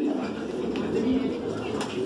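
Many homing pigeons cooing together in a loft, a steady low murmur.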